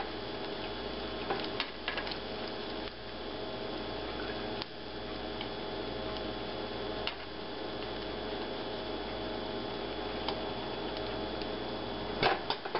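Egg and hash-brown mixture frying in a nonstick skillet with a steady sizzle, broken by a few light clicks of metal forceps against the food ring and pan.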